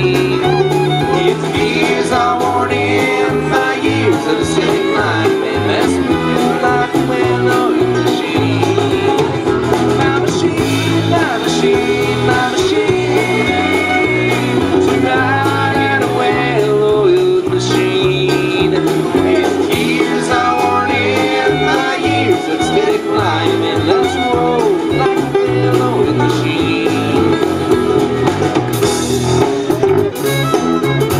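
Live acoustic bluegrass band playing a steady, uptempo tune: banjo, acoustic guitar, fiddle and upright bass, with a drum kit behind.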